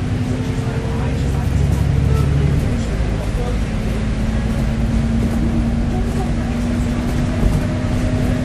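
Alexander Dennis Enviro400MMC bus heard from inside the passenger saloon: its Cummins diesel engine and Voith automatic gearbox running under way, a deep rumble that is heaviest for the first couple of seconds and then eases, over a thin steady driveline whine that rises slightly in pitch.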